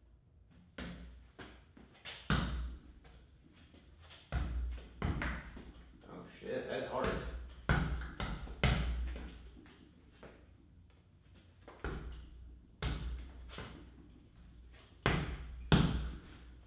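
Gloved or bare-fist punches smacking a small new Ringside leather double-end bag, landing as sharp single hits and quick pairs with uneven pauses between them, the hardest hit near the end.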